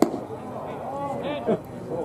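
A sharp pop as a pitched baseball smacks into the catcher's leather mitt, followed by people talking in the stands.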